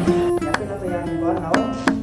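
Background music: acoustic guitar playing, its notes plucked with sharp attacks. A woman's voice says "Oh" near the end.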